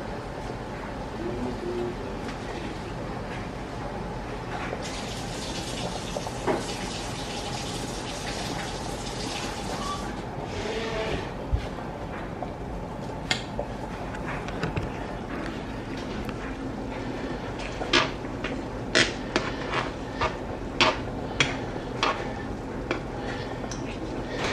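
Pot of hot dogs boiling hard on an electric stovetop, a steady bubbling hiss that swells for several seconds before settling. Near the end comes a run of sharp clicks and taps.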